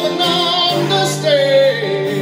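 Harmonica playing a slow lead line over acoustic guitar, with wavering held notes and a long note bent downward in pitch about two-thirds through.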